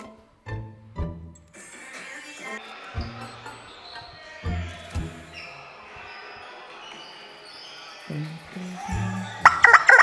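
Background music with a steady bass beat. Near the end, a rubber chicken toy is squeezed and lets out a loud, wavering squeal.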